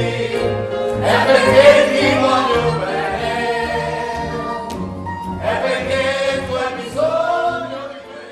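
A sung song over bass accompaniment, with three long vocal phrases, fading out at the end.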